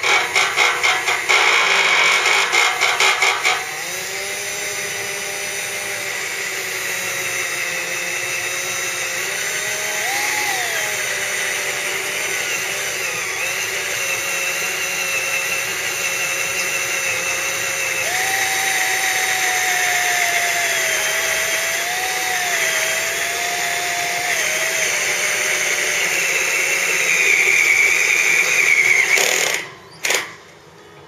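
Cordless drill boring a hole through the metal baffle cap of a motorcycle muffler. For the first few seconds it chatters in rapid stutters, then settles into steady drilling with a whining motor whose pitch wavers, until it stops suddenly near the end.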